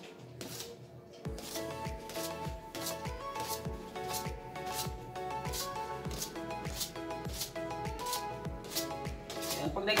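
Knife chopping down through a soft dough log onto a stainless steel table, cutting it into small portions in a steady run of about two cuts a second, over background music.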